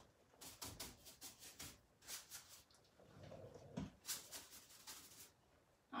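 Faint, irregular scratchy strokes of a small paintbrush working paint onto a carved wooden buffet leg.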